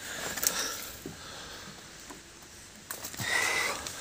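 A short breathy sniff close to the microphone about three seconds in, over faint background noise.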